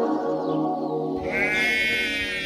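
Background music, which gives way about a second in to outdoor sound and a single drawn-out sheep bleat.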